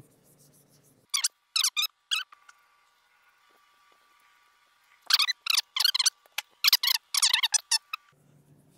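Wax applicator sponge squeaking as it is rubbed over a smooth waxed metal panel. A few short, high-pitched squeaks come in the first two seconds, then a rapid run of them from about five seconds in until nearly the end.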